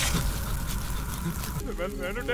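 A film soundtrack's low rumble and hiss fades down, and a voice begins speaking near the end.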